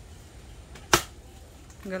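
A single sharp strike of an axe blade into a log of firewood about a second in, splitting it.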